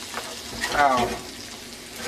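Onions and celery frying in a hot skillet, sizzling steadily while a wooden spoon stirs and scrapes them around the pan.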